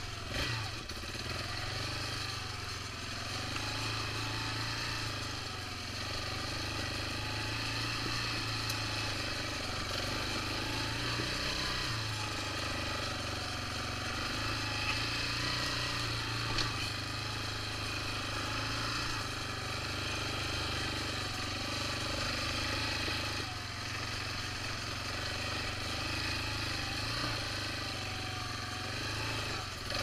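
Yamaha Raptor 350 quad's single-cylinder four-stroke engine running under light throttle on a slow trail ride, its revs rising and falling gently with no sharp changes.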